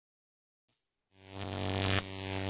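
A distorted electric guitar note or chord comes in about a second in and rings steadily at full strength, after a faint short click.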